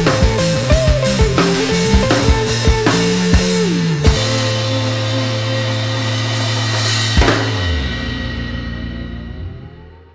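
Live rock band with electric guitars and a drum kit playing the final bars of a psychedelic song: a steady drum beat under guitar lines, then a big ending hit about four seconds in. The held final chord rings on with another crash a few seconds later and fades out near the end.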